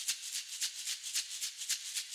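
A shaker or maraca playing a quick, steady rhythm of soft, high rattling strokes, about five or six a second, alone at the start of a music track.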